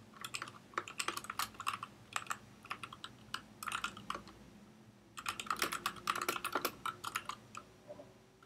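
Computer keyboard typing in quick bursts of keystrokes, with a short pause a little past halfway.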